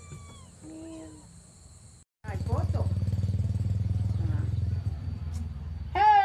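A small kitten mewing twice in the first second or so. After an abrupt cut, a loud, steady low hum fills most of the rest.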